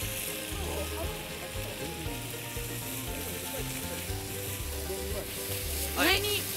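Steady crackling hiss of a charcoal fire under a cast-iron Dutch oven as glowing coals are laid on its lid with tongs. Soft background music runs underneath.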